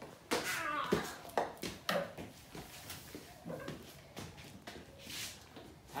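Handling noise from a phone camera being picked up and moved: knocks and rustles, with several sharp clicks in the first two seconds and brief low voices.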